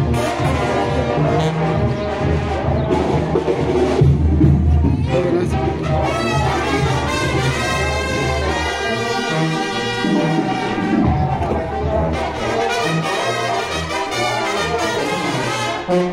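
Brass band playing, with trombones and trumpets carrying a steady melody over a low bass beat.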